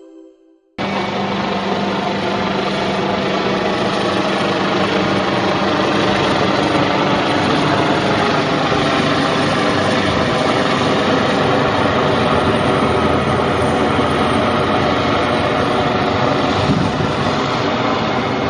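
Helicopter in flight: a loud, steady rotor and engine noise that cuts in abruptly under a second in.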